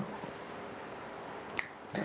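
A pause in unaccompanied singing: quiet room tone broken by a single sharp click about one and a half seconds in.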